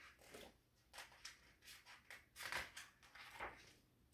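Faint rustling of a picture book's paper pages being handled and turned, in several short soft scrapes.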